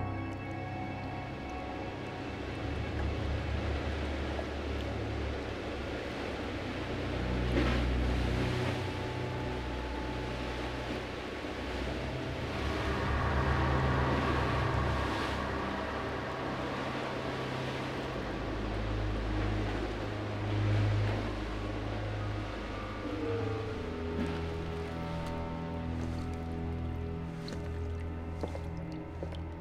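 Film soundtrack: sustained, held score music over deep low rumbles, swelling about eight seconds in, again around the middle, and once more about twenty seconds in, with a tone gliding slowly downward near the end.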